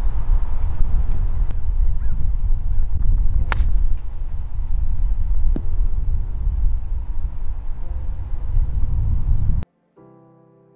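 Outdoor wind rumbling on the microphone, with a sharp click about three and a half seconds in and a few faint, short honk-like calls; it all cuts off suddenly near the end.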